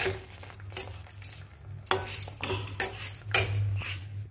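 A metal spatula stirring and scraping thick chutney paste in a metal kadhai, with about five separate scrapes and clinks against the pan. A steady low hum runs underneath.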